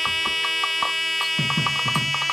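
Nadaswaram holding one long steady note over tavil drum strokes, the drumming growing busier about one and a half seconds in: South Indian temple ceremonial music.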